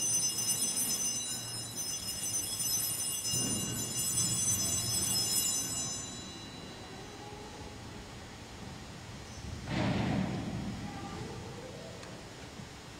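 Sanctus bells (a cluster of small altar bells) rung at the elevation of the host, marking the consecration: several high tones ringing together, fading out about six seconds in. A short noise follows near the end.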